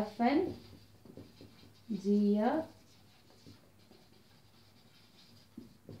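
Marker pen writing on a whiteboard: faint scratching strokes as words are written. A woman's voice speaks two short phrases, once at the start and once about two seconds in.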